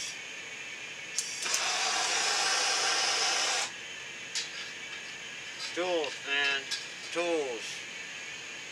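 Electric guitar rig: a click, then about two seconds of loud buzz and hiss from the amplifier that cuts off suddenly. Near the end a man mutters a few words.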